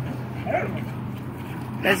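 A dog gives one short, high call about half a second in, over a steady low hum.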